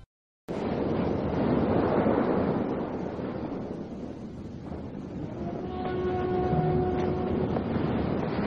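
A loud rushing roar of wind and surf comes in after half a second of silence, then eases a little. About six seconds in, a few long held musical notes enter over it.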